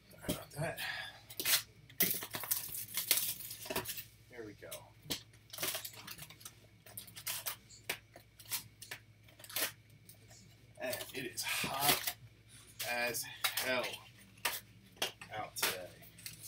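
A cardboard Topps Pro Debut hobby box being torn open and its foil card packs pulled out and stacked: repeated tearing and crinkling with light knocks on the table. A voice is heard briefly about two-thirds of the way through.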